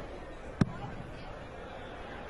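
A steel-tip dart strikes a bristle dartboard once, a single sharp thud about half a second in, over a low steady murmur in the hall.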